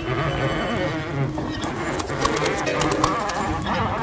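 Experimental electronic jazz played on keyboard synthesizers, with wavering, bending tones over a dense scatter of clicks.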